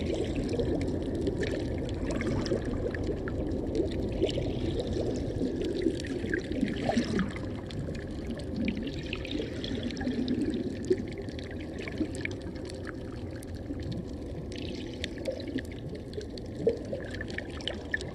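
Muffled underwater sound through a camera's waterproof housing: a continuous wash of moving seawater, dotted with many small clicks and crackles.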